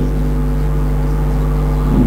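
A steady low hum with an even background noise, unchanging throughout.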